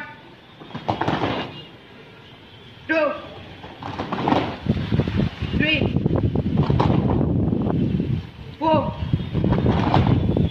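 A voice calls out an exercise count in short single shouts about every three seconds. From about four seconds in, a dense, loud noise without any clear pitch runs under the calls.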